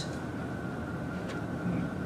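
Steady room tone: a low hum with a faint, thin high-pitched tone over it, and one faint tick just past a second in.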